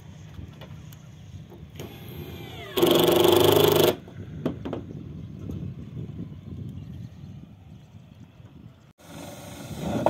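Cordless drill running in short bursts while fixing twin-corrugated roof sheets. One loud run lasts about a second, and another starts about a second before the end and builds.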